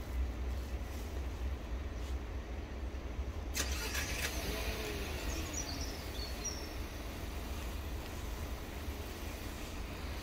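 Outdoor road-vehicle noise over a steady low rumble, with a hiss setting in sharply about three and a half seconds in and then fading slowly.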